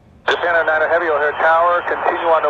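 Air traffic control radio: a controller or pilot's voice transmission cutting in abruptly about a quarter second in, thin and narrow-sounding through the radio, after a faint hiss.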